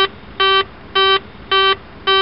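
Boeing 737NG takeoff configuration warning: an intermittent horn giving short pitched beeps about twice a second. It warns that the airplane is not set up for takeoff as the thrust levers are advanced.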